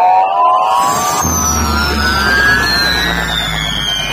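Electronic dance remix played loud through a large stack of DJ speaker boxes: a long rising sweep with a falling sweep above it, and a deep bass tone that comes in about a second in.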